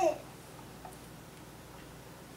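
A brief hum-like vocal sound with falling pitch right at the start, then quiet room tone.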